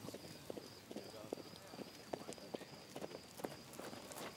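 Faint, irregular clip-clop of horse hooves, roughly three light knocks a second, under quiet outdoor background.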